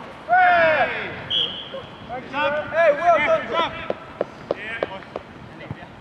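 Footballers shouting and yelling in loud bursts during an attack on goal, with a few short sharp knocks in the second half.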